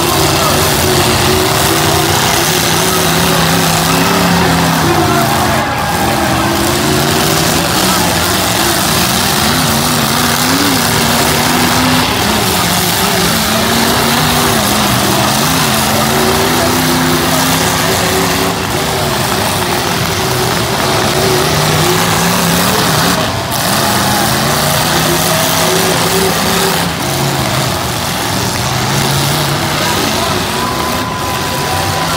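Several demolition-derby car engines revving hard and unevenly, their pitch rising and falling as the cars push and ram one another, over constant loud arena noise.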